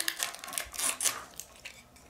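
Paper and plastic wrapping of a Mini Brands surprise capsule crinkling and rustling as it is pulled off by hand, in a run of irregular sharp crackles that thin out near the end.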